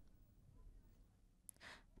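Near silence: faint room tone, with a small click and then a short, faint in-breath near the end, just before speech resumes.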